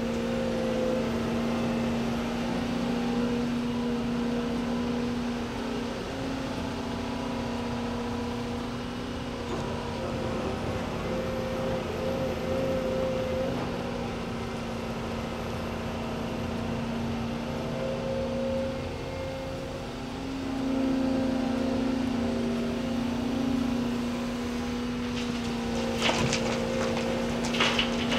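Volvo EC300E excavator's diesel engine running steadily at working speed, its pitch and load shifting as the boom swings and the bucket digs. It gets louder for a few seconds about twenty seconds in, as the machine takes more load.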